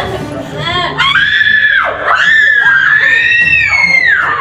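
A teenage girl's high-pitched screaming in two long held cries, starting about a second in with a short break between them, during an unexplained fit of writhing on the floor.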